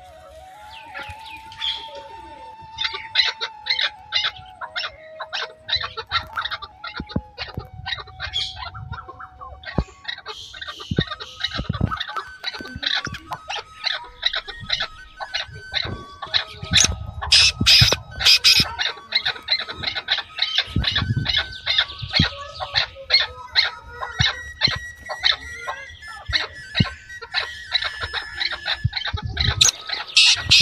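Birds chirping in rapid, busy bursts, over background music holding long notes that step from one pitch to another.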